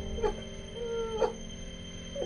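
A woman crying: two whimpering sobs about a second apart, each ending in a sharp upward break in pitch, over steady background music.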